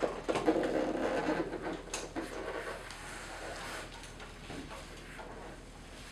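A stand-up paddleboard being flipped over and set back down on sawhorses: rubbing and knocking handling noise, loudest in the first second and a half, with a sharp click about two seconds in, then quieter.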